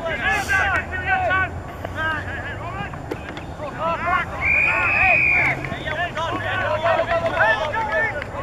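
Rugby players shouting and calling to each other on the pitch, with a single referee's whistle blast of about a second near the middle.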